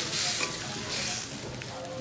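Sardines in tomato sauce sizzling in a steel wok while a wooden spatula stirs them, with a few light knocks of the spatula against the pan.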